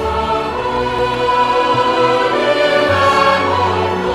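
Intro music with a choir singing long held chords that change every second or so.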